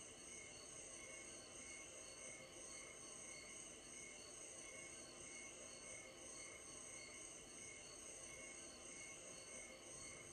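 Faint, steady cricket chirping, an even repeating pulse.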